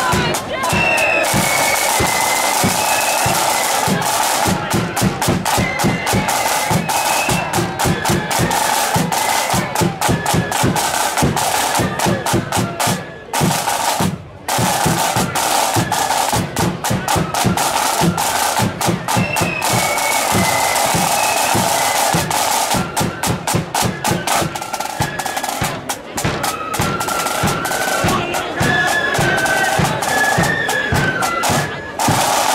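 Blood-and-thunder flute band playing: massed flutes carrying a melody over rapid, dense snare and bass drumming. The music breaks off twice for a moment about halfway through, then carries on.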